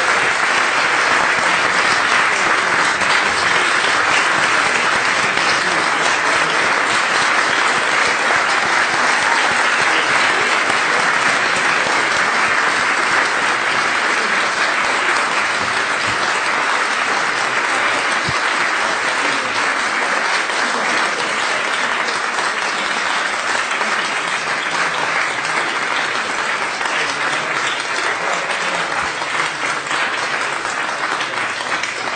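Sustained applause from a chamber full of parliamentarians and guests, a dense steady clapping that eases a little near the end.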